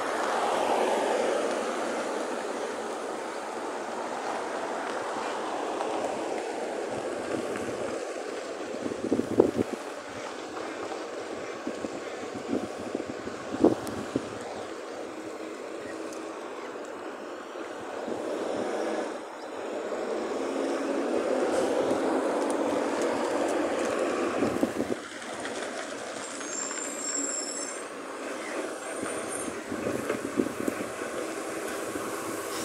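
Road traffic on a street, swelling as vehicles pass close by near the start and again about twenty seconds in, with a garbage truck drawing nearer. A few sharp knocks stand out around nine and fourteen seconds in.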